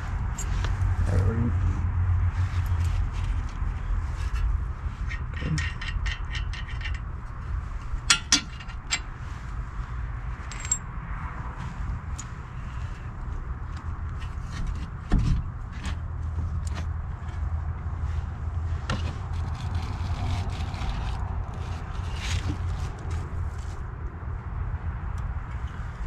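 Metal clinks, knocks and scrapes as a front brake caliper is handled and fitted back over the disc rotor and hub, including a short run of quick ticks about five seconds in, over a steady low rumble.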